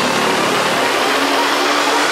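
Dark progressive psytrance: a dense, hissing synthesizer noise sweep over a held synth tone, with the kick and bass dropped out.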